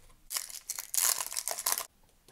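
A foil wrapper of a 2021-22 Upper Deck MVP hockey card pack being torn open: a run of crinkling and tearing that stops abruptly near the end.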